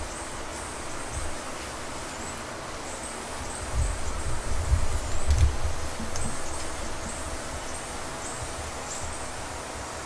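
Steady background hiss, with low rumbling bumps between about four and six seconds in and a few faint high ticks.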